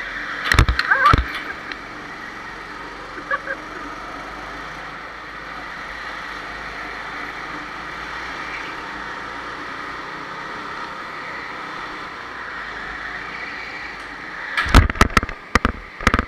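Go-kart engine running at a steady pitch, with a few sharp knocks about half a second in and a cluster of them near the end.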